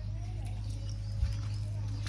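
A steady low rumble with faint distant voices, and one soft thump a little past halfway.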